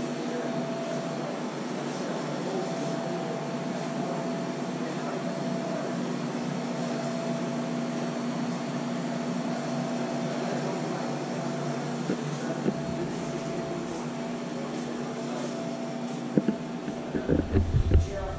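Steady mechanical hum of room machinery, with a low drone holding two steady tones. A few short knocks and thumps come near the end.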